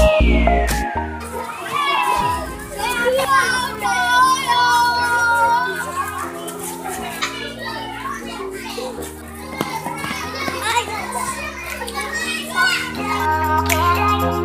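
Children's voices chattering and calling out over background music with a steady backing that changes chord in steps. A whistle-like tone falls steeply in pitch during the first couple of seconds.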